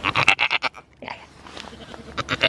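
A goat bleating: one short, fast-wavering bleat that ends before a second in.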